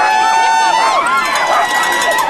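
A harnessed sled dog team of huskies yelping and howling all at once, many overlapping rising and falling cries, with one long held cry in the first second. This is the excited clamour of dogs held back at a race start, eager to run.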